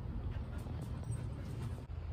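A puppy whimpering faintly a few times over a steady low rumble on the microphone.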